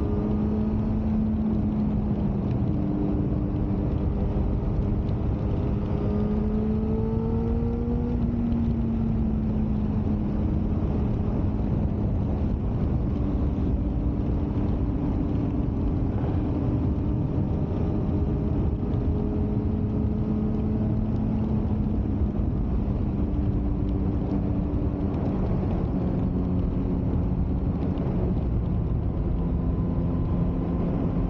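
Suzuki GSX-R 600's inline-four engine running at a steady cruise, its note mostly level with small rises and dips in pitch, a slight climb about seven or eight seconds in. Heavy wind rumble on the microphone runs underneath throughout.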